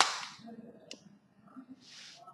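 A single sharp snap right at the start that trails off over about half a second, followed by a faint tick about a second later and a short hiss near the end.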